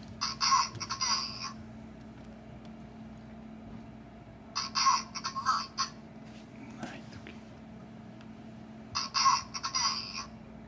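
A small robot speaker plays the same short electronic sound clip three times, each about a second and a half long, roughly four seconds apart.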